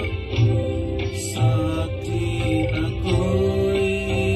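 A man singing a slow, sad Hindi film song into a microphone, holding long notes, over instrumental accompaniment with a steady low beat.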